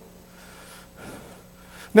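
A quiet pause between spoken phrases: low room tone with a faint steady hum and the speaker's soft intake of breath about a second in. His voice resumes right at the end.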